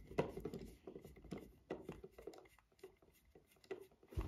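Faint, scattered small clicks and scrapes of a screwdriver turning the little screw of a plastic toy train's battery cover.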